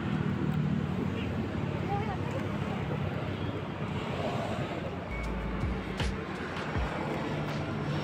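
Road traffic passing: a steady rush of vehicle noise with a low rumble about five seconds in.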